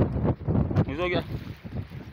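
Wind buffeting the microphone in gusts, a rough low rumble, with a man's voice briefly asking "what?" about a second in.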